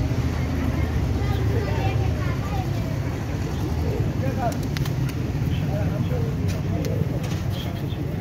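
Outdoor street ambience: people talking in the background over a steady low rumble of traffic, with a few sharp clicks in the second half.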